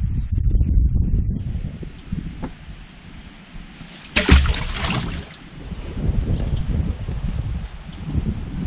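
Wind buffeting the microphone in gusts, with a short, loud rustle about four seconds in.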